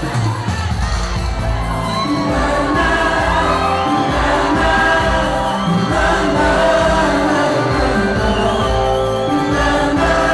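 Live band music: a male lead singer singing into a microphone over guitars and a band, played loud through the hall's sound system.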